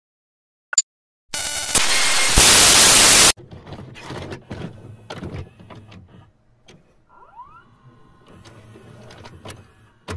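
VCR playback sound effects: a short blip, then about two seconds of loud hissing static that cuts off suddenly. The clicks, clunks and rising motor whir of a tape mechanism follow as the tape begins to play.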